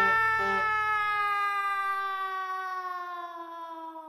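A girl's long, unbroken scream that slowly falls in pitch and fades away as she drops down a chute.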